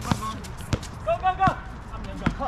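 Basketball being dribbled on an outdoor court: three sharp bounces about 0.7 s apart.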